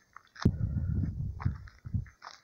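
Handling and walking noise from a hand-held camera carried along a dirt road: a sharp knock about half a second in, then an uneven low rumbling.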